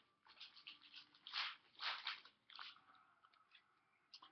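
Trading cards being handled by hand: a run of soft scrapes and rustles as cards slide against each other and the tabletop, the loudest two around the middle.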